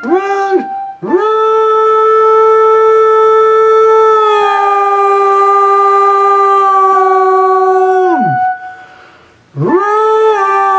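A man howling one long wordless note, held steady for about seven seconds after a short swooping yelp. The note steps slightly lower midway and slides steeply down at the end, and a second howl rises in near the end.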